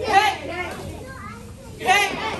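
A group of children and an adult shouting a loud kiai, "Hey!", in unison with their karate kicks: once at the start and again near the end, with a few quieter voices in between.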